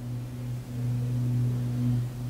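A steady low hum with a faint higher tone above it, dipping briefly about two-thirds of a second in.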